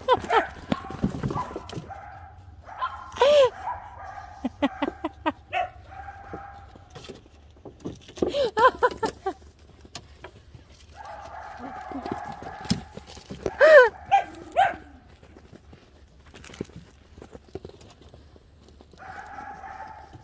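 Mini goldendoodle puppies barking and yipping at play, in short clusters of high calls about three seconds in, around eight to nine seconds, and again around thirteen to fourteen seconds.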